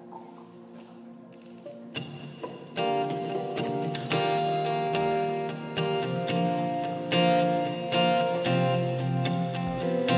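Worship band guitars, acoustic and electric, strumming chords of a song intro. They come in about two seconds in over a soft held chord and grow louder a second later.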